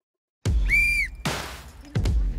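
After a brief dead silence, a single short whistle blast signals the start of the timed challenge. Background music with a heavy beat kicks in with it, and two loud drum hits follow.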